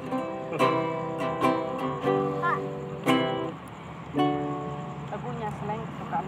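Acoustic guitar strummed by hand: about five chords, each struck and left to ring out before the next. The playing fades out about four and a half seconds in.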